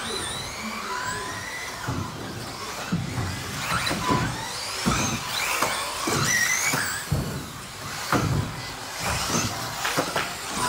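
Electric 1/10 four-wheel-drive RC buggies racing, their motors whining up and down in pitch as they accelerate and brake, with repeated thuds of the cars landing and hitting the track.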